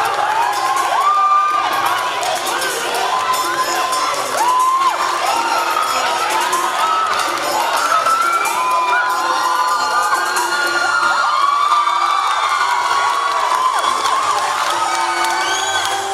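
A crowd of people shouting, whooping and cheering continuously, many voices overlapping.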